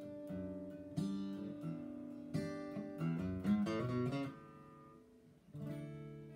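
Unaccompanied acoustic guitar played by hand: a few strummed chords, a quick run of single notes about three seconds in, then the strings ringing out and fading before one more chord near the end.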